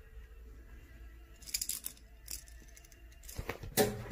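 Small plastic cat toy ball jingling in a hand: a few short high rattles, then a louder knock near the end.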